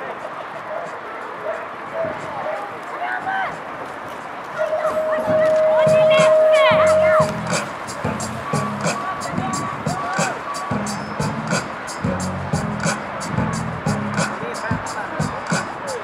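BMX start-gate signal: a loud, steady electronic tone lasting nearly three seconds, about five seconds in, as the riders leave the gate. After it, music with a steady beat plays over the track's loudspeakers.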